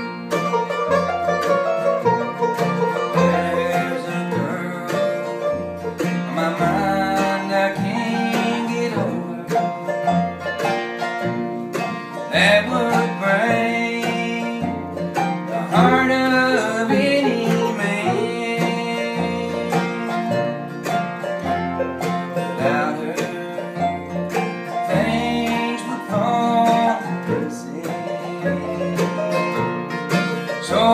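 Bluegrass band playing an instrumental passage: mandolin and acoustic guitar picking over an upright bass that keeps a steady beat.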